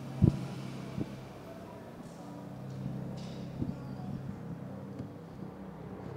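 A microphone being handled and taken off its stand: a few short bumps, the first about a quarter second in and the loudest, over a steady low hum.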